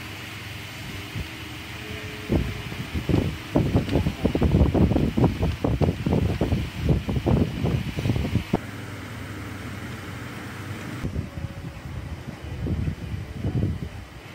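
Handling noise: irregular clusters of low rubbing and knocks from about two seconds in until about eight seconds, and again briefly near the end, over a steady background hum.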